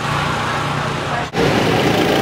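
Go-kart engines running loud on the track, in two clips with a sharp cut about a second in.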